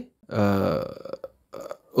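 A man's drawn-out hesitation sound, "aah", lasting under a second and trailing off, followed by a short pause.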